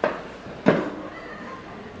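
Two brief clatters, one right at the start and another just under a second in, over low room noise, as the metal lid of a buffet chafing dish is handled.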